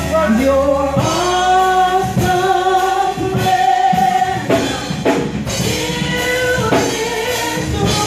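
Live gospel worship singing: women's voices amplified through microphones, holding long notes that slide between pitches, over an instrumental backing with drums.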